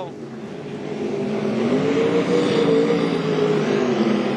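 Winged dirt-track sprint car's V8 engine under throttle as it slides through a corner and passes close by, growing louder as it nears, its pitch climbing and then easing slightly near the end.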